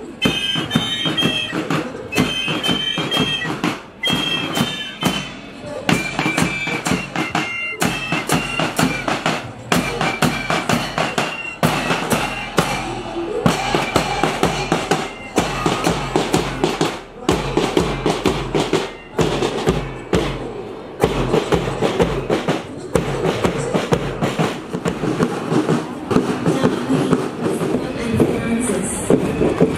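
A marching fife-and-drum band playing: a high, shrill melody on fifes over a steady beat of side drums. The fife tune is clearest in the first half, after which the drumming carries on.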